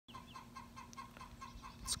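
Chickens clucking faintly, short calls repeating about four to five times a second.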